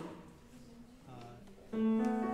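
A piano note struck near the end, ringing on with a steady pitch and slowly fading.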